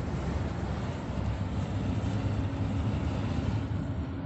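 Road and engine noise heard inside a moving car's cabin: a steady low rumble.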